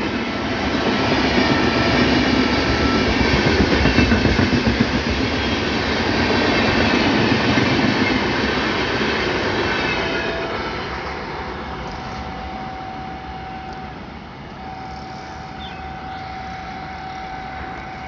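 Red LHB passenger coaches of an Indian express train running past at speed, their wheels and bogies on the rails making a loud, steady rushing rumble. About ten seconds in, the last coach, the brake-and-generator car, goes by and the sound fades away as the train recedes, leaving a faint steady tone.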